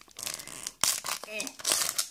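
Foil wrapper of a Pokémon TCG booster pack crinkling and tearing as it is pulled open by hand, with a sharp crackle a little under a second in and a louder crinkle near the end.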